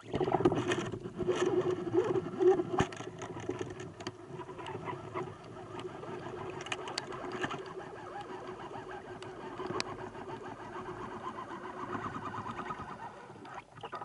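Underwater, a band-powered speargun fires with a sudden loud snap at the start, followed by a continuous rush of water and bubbles with many sharp clicks and rattles as the speared fish thrashes on the shaft.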